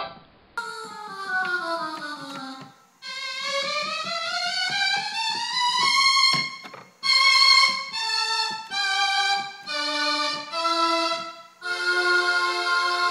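Melloman, a homemade Mellotron-style keyboard that plays its notes from cassette tapes in Walkman players, sounding a held note whose pitch slides down, then a note sliding up over about three seconds, followed by a run of separate held notes.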